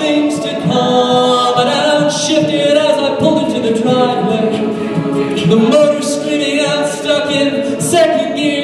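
Mixed-voice a cappella group singing, a lead soloist carrying the melody over the group's sustained backing harmonies.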